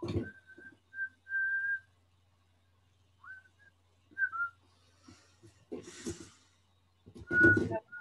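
A person whistling a few short notes, mostly held on one pitch with a couple of quick slides, broken by two short noisy bursts, over a faint steady electrical hum.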